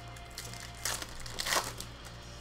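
Foil trading-card pack crinkling as it is handled and torn open: two short rustles, about a second in and again half a second later, over a low steady hum.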